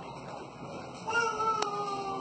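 A baby's single drawn-out cry starting about a second in, sliding slowly down in pitch, with a light click partway through.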